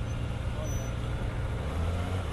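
Sport motorcycle engine running at low revs among slow city traffic: a steady low rumble that grows a little deeper near the end.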